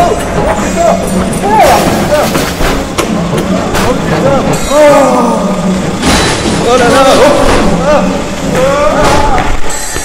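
Voices of people talking, too unclear or overlapped for the recogniser to pick up words, over a steady low hum.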